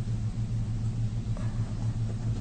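A steady low hum with no change in pitch or level, and a faint tick about one and a half seconds in.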